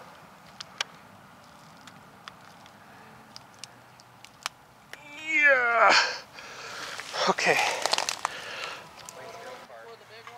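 Faint scattered clicks, then a meow-like call about five seconds in that bends up and down in pitch, followed by a couple of seconds of rustling with sharp clicks.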